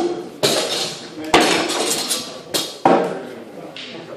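Sparring swords striking shields and each other in a sword-and-shield bout: about five sharp clanks at uneven intervals, each ringing briefly.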